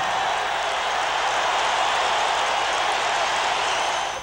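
A steady, even rushing noise, mostly in the upper-middle range, without voices, tones or distinct hits.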